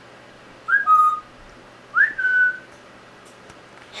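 Congo African grey parrot whistling twice: each whistle is a quick upward slur into a held clear note, the second a little higher and longer than the first.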